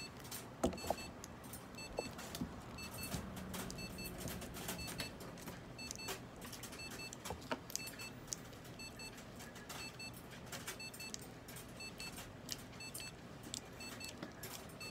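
Irregular clicks and scratchy rustling as a prairie dog is handled and its fur is brushed with a small bristle brush. Faint double beeps repeat throughout in the background.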